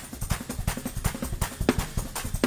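Drum kit played in a fast, driving gospel praise-break rhythm, with rapid drum strokes and cymbals.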